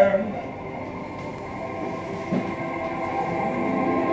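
A sung male note ends right at the start. Then quieter instrumental backing music with steady held chords plays between the sung lines, with faint voices in the room.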